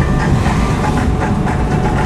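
Steady car road and engine noise heard from inside the cabin while driving, a constant low rumble.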